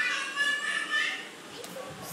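A toddler's high-pitched voice, vocalising for about the first second, then quieter.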